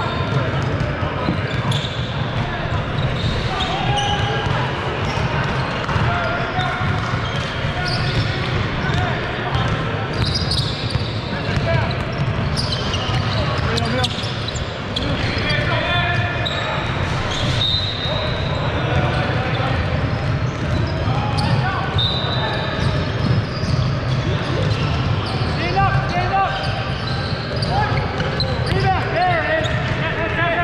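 Basketball bouncing on a hardwood court during live play, with players' voices calling out across a large, echoing sports hall over a steady low hall rumble.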